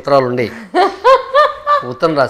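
Speech, then a woman laughing: a few short, high-pitched laughs in the second half.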